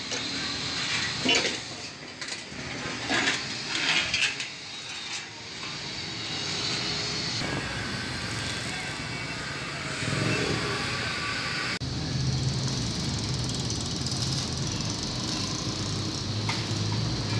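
Steel sheet being handled, with several sharp metal clanks and scrapes in the first few seconds. Later comes an abrupt change to a steady low hum.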